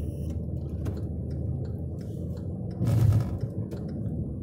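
Steady low rumble of road and engine noise inside a moving car's cabin. A brief, louder rush of noise comes about three seconds in.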